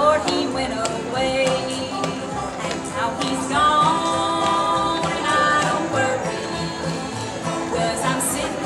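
Bluegrass string band playing live: banjo, acoustic guitar, mandolin, fiddle and upright bass, with long held melody notes over steady picking.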